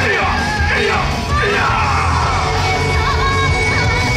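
Loud yosakoi dance music with shouted group calls from the dancers in the first couple of seconds, after which a held high note carries the tune.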